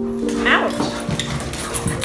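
A dog yipping and whimpering over soft background music.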